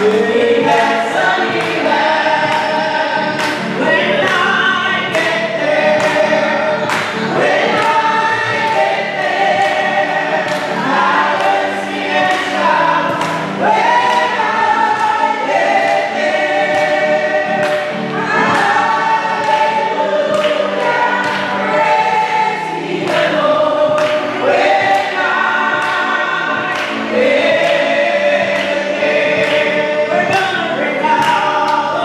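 A small vocal group singing a gospel praise and worship song through microphones, with a steady beat behind the voices.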